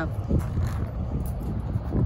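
Wind rumbling on the microphone, a steady low buffeting with no clear distinct events.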